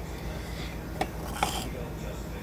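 Two light clicks about half a second apart: a spoon knocking against the cup while scooping chocolate milk powder, over a low steady hum.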